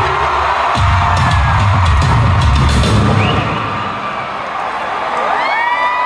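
Live rock concert heard from within the crowd: fans cheering and shouting over a deep bass rumble from the PA, with a held pitched note near the end that bends up and back down.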